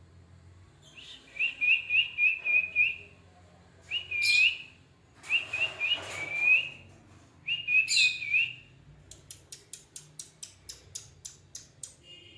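Pet parakeet whistling runs of quick, rising chirps in four short bouts, each loud. They are followed, for the last three seconds, by a run of sharp clicks at about four a second.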